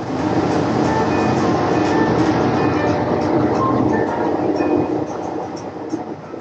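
Small ferry boat under way, its motor running with water churning in the wake: a loud, steady rumble and rush that eases slightly near the end.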